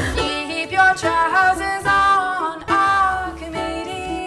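A woman singing while strumming a ukulele, her voice holding several long notes.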